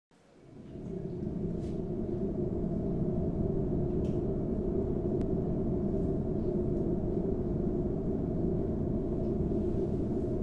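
Low, steady soundtrack drone that fades in over the first second, with a few faint clicks.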